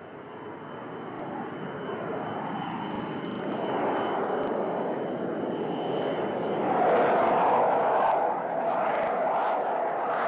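Lavi fighter's jet engine on landing approach, a rushing jet noise that grows steadily louder as the plane comes in, loudest about seven to eight seconds in.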